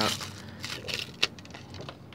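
Panini sticker packet's shiny wrapper being torn open and crinkled by hand: a run of irregular sharp crackles with one louder snap a little past the middle.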